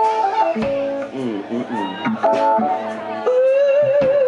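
A live band playing, with strummed acoustic guitars and keyboard. A long held, wavering note comes in about three seconds in.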